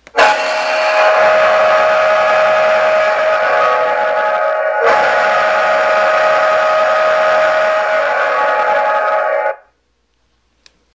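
A Boom Blasters wireless car horn, set off by its remote, plays a hockey goal horn sound: a loud, steady, deep-toned horn blast. It breaks briefly about five seconds in, then continues and cuts off about half a second before the end.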